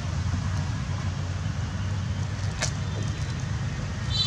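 Steady low outdoor rumble with one brief sharp click about two and a half seconds in.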